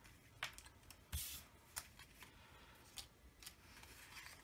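Die-cut paper ephemera pieces being handled and set down on a desk: a few faint paper rustles and light taps, the loudest about a second in.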